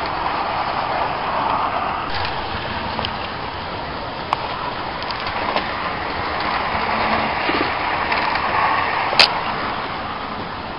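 Steady rushing rumble of a running train that swells and eases slowly, with a sharp click about nine seconds in.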